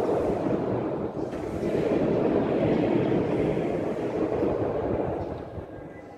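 A congregation reading a psalm verse aloud together in Batak: many voices blended into one indistinct murmur, trailing off about five seconds in.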